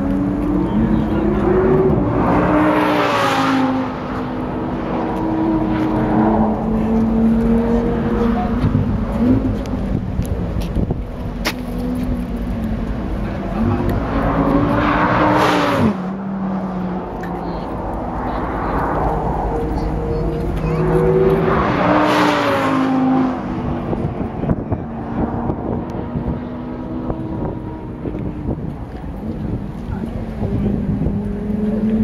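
Audi sports cars running an autocross course: engines revving up and down as they accelerate and brake between the cones, with three loud close passes, a few seconds in, about halfway, and around two-thirds through.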